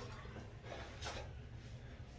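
Faint rustling of a cloth bath towel being handled and pressed against a face, with one brief rustle about a second in, over a low steady hum.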